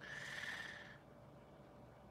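A single soft breath from a man, lasting about a second, then faint room tone.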